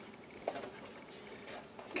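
Faint handling noise of a plastic printer duplexer unit being turned over in the hands, with one light knock about half a second in.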